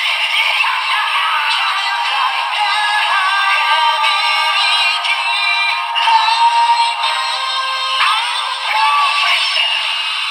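A DX Kamen Rider Revice toy transformation belt with the Perfect Wing Vistamp playing its sung, electronic transformation song through its small speaker, with no bass.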